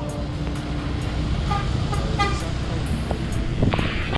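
Road traffic heard from a moving motorbike on a wet city street: a steady rumble of engines and tyres, with a few short horn toots in the middle.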